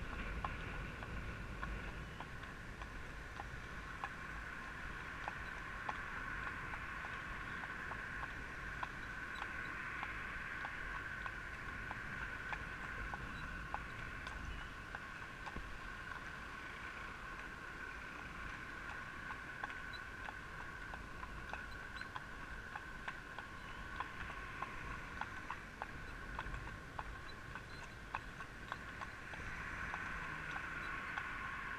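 A horse's shod hooves clopping on a tarmac road at a walk, a steady run of light clicks. Under them runs a steady high hum and a low rumble of wind on the microphone.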